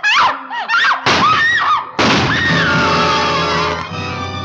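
High screaming cries that break off and restart, then halfway through a sudden loud orchestral music sting with one long falling scream over it. This is a radio-drama climax with screams as sound effects.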